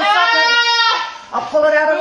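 A woman's voice crying out in two drawn-out, high-pitched wails, the first lasting about a second and the second starting about halfway through.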